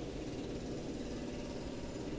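Faint, steady low hum of distant city traffic.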